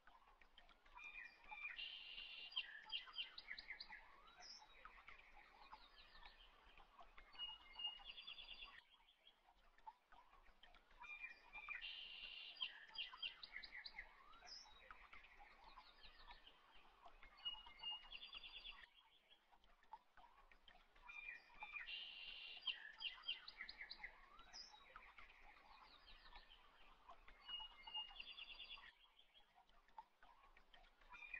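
Faint birdsong ambience of chirps and short trills, the same stretch of about ten seconds repeating three times: a looped background track.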